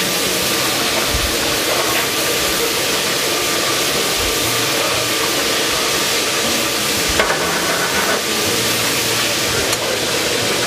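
Butter pan sauce with shrimp sizzling hard in a hot skillet over a gas burner, a steady hiss with a few faint clicks of metal against the pan.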